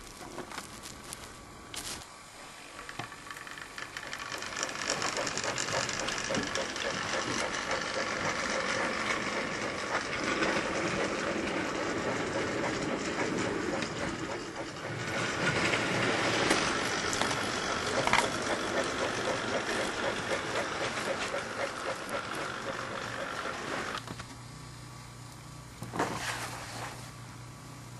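Model train running along the layout track: a steady whir and rattle that builds up over the first few seconds and cuts off suddenly near the end.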